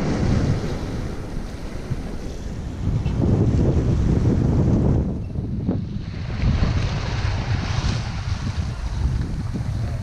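Sea waves breaking and washing over a rocky shore of dark volcanic rock, with wind buffeting the microphone. The surf swells louder for a couple of seconds about three seconds in.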